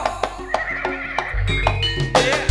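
Live jaranan ensemble music: percussion strokes on a steady beat, about three a second, over sustained pitched instrument tones. A deep bass layer drops out and returns about two-thirds of the way in.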